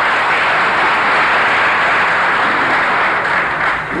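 Audience applauding, a dense steady clapping that dies away just before the end.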